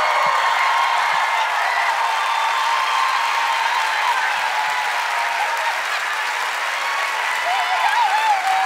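Studio audience applauding and cheering, with women screaming in excitement over it. The sound is loud and steady and eases off slightly near the end.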